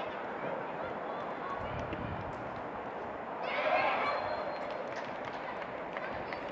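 Outdoor football pitch ambience with distant shouting from players and spectators; a louder shout rises about three and a half seconds in and lasts under a second.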